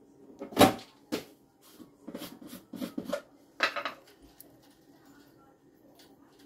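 Hard plastic knocking and clattering as a plastic termite bait-station box is handled against a plastic bucket: a run of about ten sharp knocks over some three seconds, the first the loudest.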